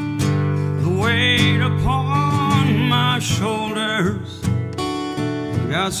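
Acoustic guitar strummed in a slow country-folk song. A man's voice sings a wavering, drawn-out line over it for the first few seconds, and the guitar strums carry on alone near the end.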